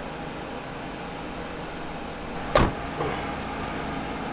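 A patrol car's rear door slammed shut once, about two and a half seconds in, with a smaller knock just after it, over a steady low hum.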